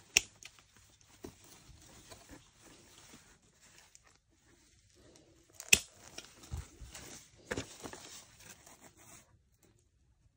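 Two sharp snips of hand-held garden scissors cutting through eggplant stems, one at the very start and one about six seconds in. Leaves and stems rustle and are handled in between, with a soft low thud shortly after the second snip; the rustling stops near the end.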